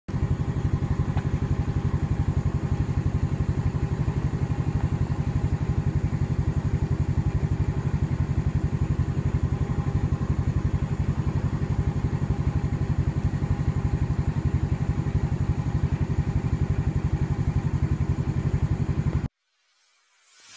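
Yamaha Mio-class automatic scooter's single-cylinder four-stroke engine idling steadily at about 1,400 rpm, an even fast putter. It cuts off suddenly near the end.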